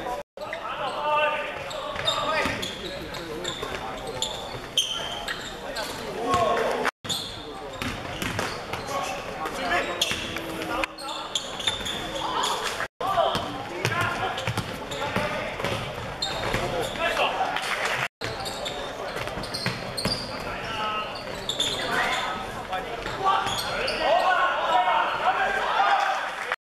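Live basketball game sound in a large hall: the ball bouncing on the hardwood court amid indistinct shouting from players and spectators, with echo. The sound drops out to silence briefly four times.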